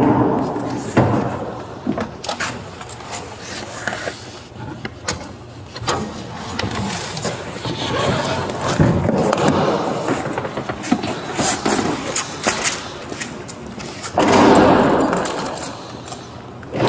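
Handling noises of a patrol SUV's rear door and seatbelt being worked by hand: a scatter of clicks and knocks, with a louder burst of noise near the end.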